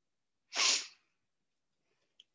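A single short, sharp burst of breath from a person near the microphone, about half a second in.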